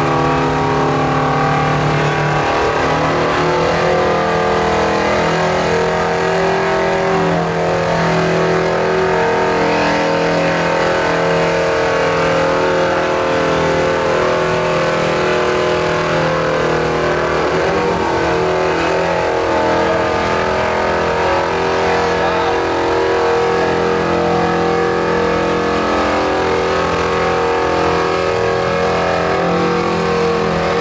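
Oliver farm tractor's engine running hard under full load as it drags a weight-transfer pulling sled: a loud, steady drone. Its pitch shifts about two seconds in and again around seventeen seconds.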